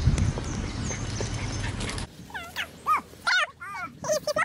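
Low wind rumble on the microphone, then from about halfway a small dog giving short, high whines that rise and fall, several in quick succession.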